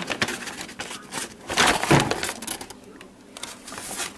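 Packaging being handled: kraft paper bags and plastic wrapping rustling and crinkling in an irregular run, loudest about halfway through, as a paper meal bag is pulled open.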